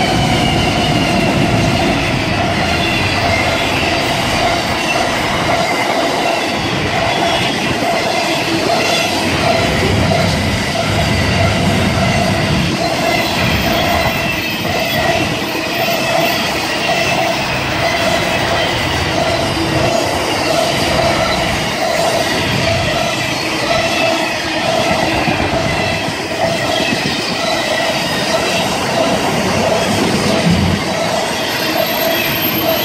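Pacific National intermodal freight train passing close by: its two NR class GE Cv40-9i diesel-electric locomotives go past at the start, then a long rake of container wagons rolls by with wheel clatter and a steady high-pitched wheel squeal.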